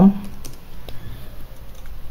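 Computer keyboard typing: a few separate, unhurried keystroke clicks with gaps between them.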